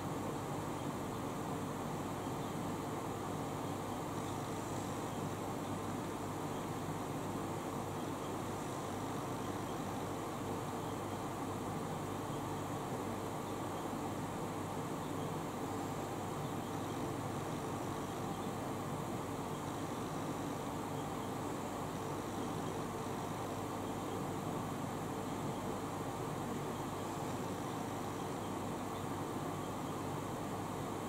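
Electric fan running: a steady, even whir with a faint constant hum underneath.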